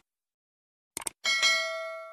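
A quick run of mouse-click sound effects, then a bright bell chime that rings out and fades: the click-and-notification-bell effect of a subscribe-button animation.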